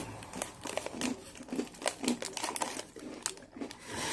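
Foil cookie wrapper crinkling in the hands, with irregular crackles throughout.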